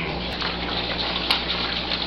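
Steady hiss of background noise with a low hum, and a couple of faint clicks, one about a third of a second in and another just after a second.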